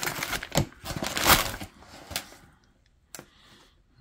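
Crinkling and rustling of a torn kraft paper padded mailer as a boxed item is pulled out of it, with a few sharp clicks. The rustle dies away about halfway through, and one more click comes near the end.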